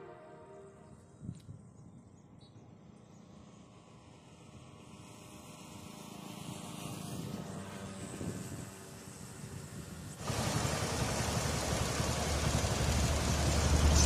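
Background music fades out into quiet outdoor ambience. About ten seconds in, a loud, steady rushing noise sets in.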